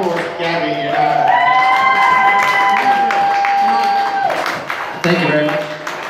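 Talk from the stage, then a long held note in two-part harmony that swoops up slightly at its start and lasts about three seconds, then more talk.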